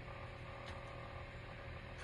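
Quiet, steady room hum and hiss with faint constant tones, and one faint tick a little after half a second in.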